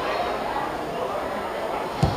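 Indistinct distant voices of players and spectators at a football match, a steady murmur with no clear words.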